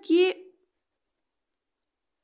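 A woman's voice says one short word, then a faint, brief scratch of a ballpoint pen drawing a small mark on paper, with near silence around it.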